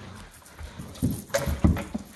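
A puppy scampering and playing on a hardwood floor: a quick run of paw thuds and knocks in the second half.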